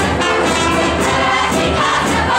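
A brass band playing a Hungarian folk dance tune over a steady beat, with a group of young voices singing along.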